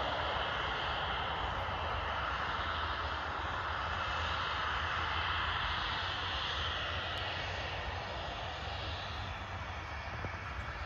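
Distant jet engine noise from a Boeing 737-800's CFM56 engines as the airliner moves along the runway: a steady roar with a thin whine over it. It swells slightly and then eases off towards the end.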